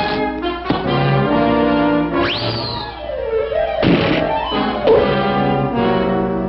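Brassy orchestral cartoon score with trumpets and trombones, punctuated by sound effects: a quick upward whistle-like sweep that slides back down about two seconds in, and a short noisy hit about four seconds in.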